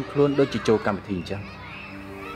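A person's voice in a quick run of short syllables, each falling in pitch, for about the first second and a half. After that only steady background tones remain.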